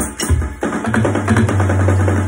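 Electronic dance track with drums: a kick on every beat, about two a second, stops about half a second in, and a held low bass note with rapid drum hits above it fills the gap.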